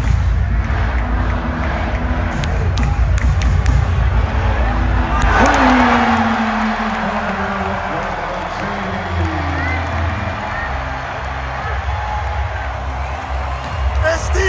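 Basketball arena crowd noise over loud PA music, with a swell of cheering about five seconds in.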